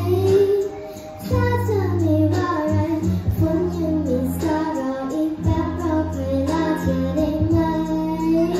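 A young girl singing a pop ballad into a microphone over accompanying music, her melody riding on held bass notes that change about once a second.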